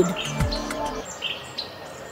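Faint birds chirping over soft background ambience of an animated jungle scene, fading away toward the end.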